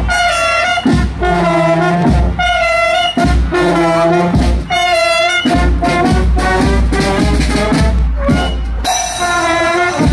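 Marching brass band of trombones, trumpets, saxophones, clarinet and sousaphone playing a march in held, changing notes, with a drum keeping a regular low beat underneath.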